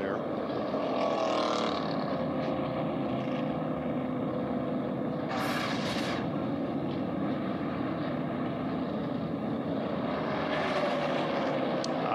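NASCAR Cup stock cars' V8 engines running as a pack goes by, the engine note slowly rising and falling. About five seconds in comes a brief whoosh from the broadcast's transition graphic.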